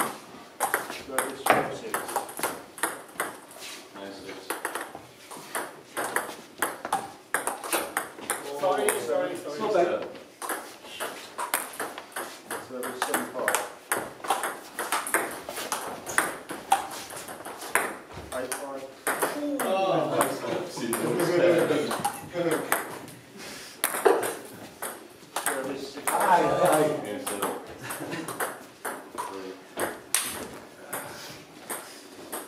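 Table tennis balls being hit in rallies: a run of sharp, quick clicks off the bats and the table, with people talking in the background.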